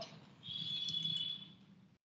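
A faint, steady high-pitched tone, held for about a second, starting about half a second in, over a light background hiss.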